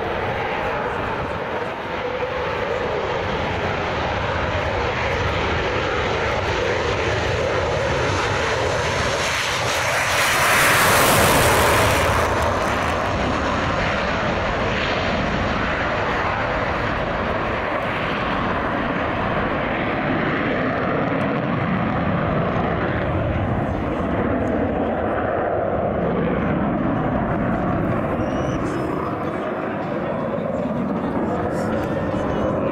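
F-16 fighter jet engine at full power on its takeoff run and climb-out: a continuous jet roar that swells to its loudest about ten to twelve seconds in as the jet passes, then carries on steadily as it climbs away.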